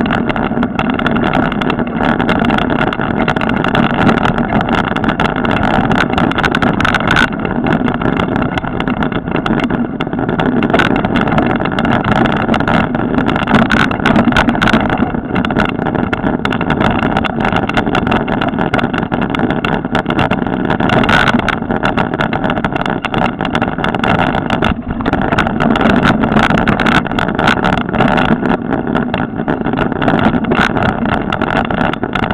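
Loud, steady rushing of wind on the microphone and rattling of a bike-mounted camera as a mountain bike rolls over a dirt forest trail, with frequent small knocks from bumps in the track.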